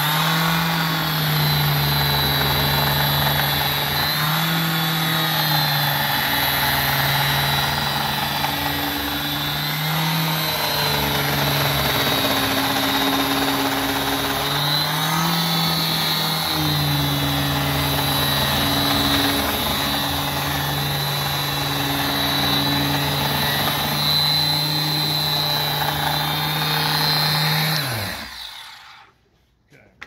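Quarter-sheet palm sander with a fabric pad running steadily while pressed flat on a pane of glass, vibrating the glass to settle it into its bed of glazing putty in a wooden window sash. Its hum shifts a little in pitch as the pressure on it changes, and near the end it switches off and winds down.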